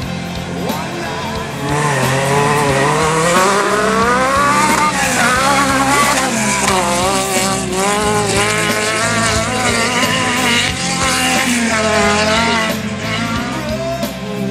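Off-road rally buggy's engine working hard, its pitch climbing steeply and then rising and falling again and again as it is driven across a dirt track. It becomes loud about a second and a half in and eases off near the end, with music faintly underneath.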